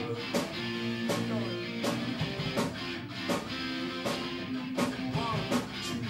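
A live metal band playing: distorted electric guitars and bass over a drum kit, with a steady beat and a drum hit about every three-quarters of a second.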